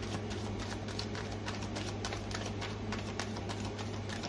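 Tarot cards being shuffled by hand: a quick, uneven run of card-edge clicks and slaps, several a second, over a steady low hum.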